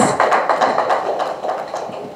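Applause: a small group of people clapping, dying away over the two seconds.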